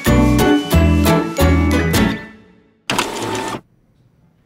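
Upbeat jingle music with strong bass notes, fading out about two seconds in. Near the end comes a brief, dense whirr of an inkjet printer feeding out a page.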